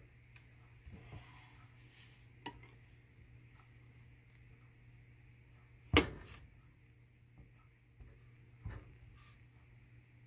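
Wire soap cutter slicing a bar off a loaf of cold process soap: quiet handling with a few light ticks, one sharp clack about six seconds in and a smaller knock near the end as the cut bar is handled.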